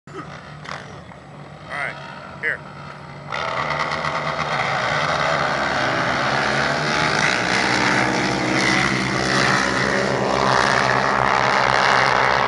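Quad (ATV) engines at full throttle in a sand drag race. They come in suddenly about three seconds in and stay loud at high revs.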